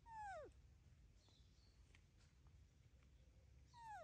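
Baby macaque giving two falling coo calls, each about half a second long, one at the start and one near the end, each sliding down in pitch. This is the contact call an infant macaque makes when it is apart from its mother.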